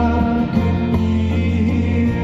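A live soft-rock band playing through the PA, with acoustic guitar, electric bass and keyboard sounding together in held notes over a steady bass line.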